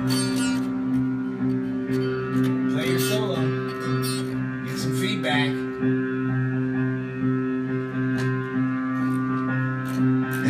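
A child strums and slaps the strings of a small toy nylon-string guitar in irregular strokes over a steady, held drone. A voice calls out briefly about three seconds in and again about five seconds in.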